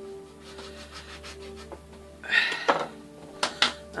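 Kitchen knife cutting through the strand ends of three-strand nylon rope, with a short rasping cut about two seconds in. Two sharp knocks follow near the end as the knife is put down on the wooden cutting board. Background music with steady held notes runs underneath.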